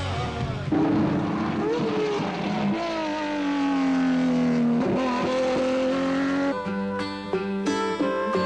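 Turismo Carretera race car engine running loud, its pitch rising briefly and then sinking slowly as it eases off, with music with a strummed rhythm coming in about six and a half seconds in.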